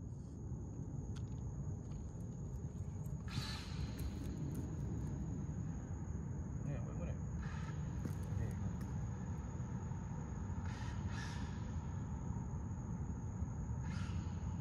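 Outdoor background: a steady low rumble with a faint steady high-pitched tone, and a few brief faint hissy sounds and distant voices.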